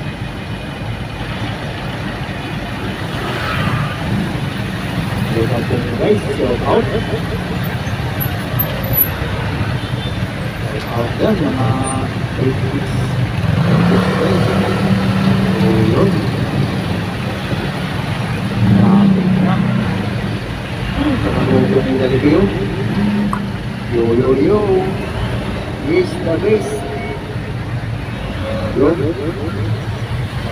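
A road vehicle's engine running at low speed in slow traffic, heard from inside as a steady low rumble, with voices talking now and then.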